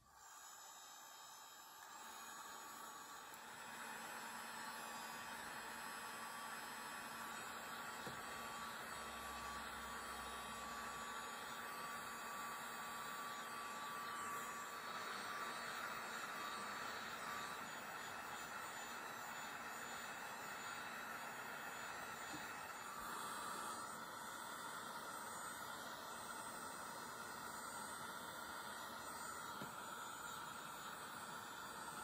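Handheld heat gun from National Shrink Wrap running on low, a steady airy hiss with a faint motor whine as it blows hot air over soy wax candle tops to smooth them. It comes in about two seconds in and gets a little louder shortly after.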